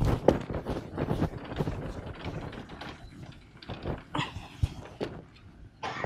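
Lecture-room background noise while the audience works quietly: irregular rustling and light knocks, busiest in the first couple of seconds and sparser later.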